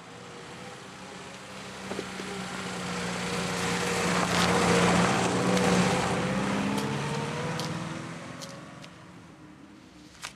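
An engine passing by, growing louder to a peak about halfway through and then fading away, with a low droning hum.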